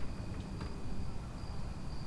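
Crickets chirping in high, steady trills that come and go, over a constant low rumble, with a couple of faint ticks about half a second in.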